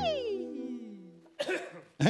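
An electric-piano chord dies away while a single pitched sound swoops up and then slides slowly down over about a second. A short burst follows about a second and a half in.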